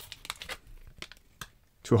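Foil wrapper of a trading-card pack crinkling as it is pulled open and the cards slid out, a scatter of small crackles that dies away after about a second and a half.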